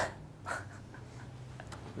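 Quiet room with a steady low hum and two short breathy sounds, one at the very start and a softer one about half a second in, with a few faint clicks.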